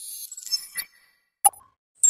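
Logo sting sound effect: a high, glittering shimmer with a few small clicks, ending in one sharp click about a second and a half in.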